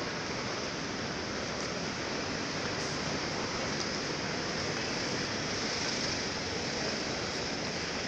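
Steady, even city street noise with no distinct events: a continuous hiss of traffic and general street bustle.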